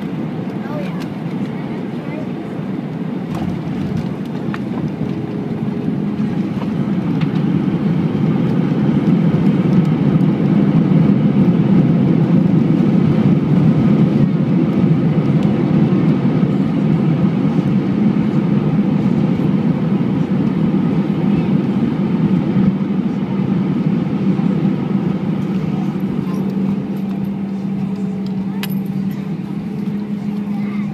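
Airbus A320 cabin noise on the landing rollout: a steady low roar of the jet engines and rushing air, swelling over several seconds and then slowly easing as the airliner slows on the runway.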